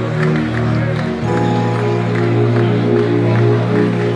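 Church worship music of slow held chords, the chord changing about a second in, with the congregation's voices praying aloud underneath.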